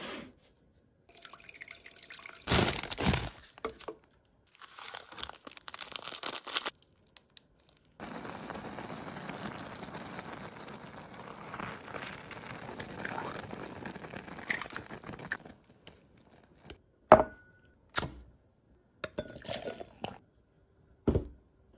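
Short rustling and handling sounds of food prep, then about seven seconds of a steady even hiss from a pot of noodles and broth bubbling on the heat, followed by a few sharp clicks near the end.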